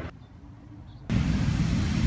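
Faint city street noise, then a sudden cut about a second in to a loud, steady rush of breaking ocean surf and wind.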